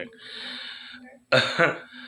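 A man's soft breathy exhale, then, about a second and a half in, a sudden loud burst of laughter.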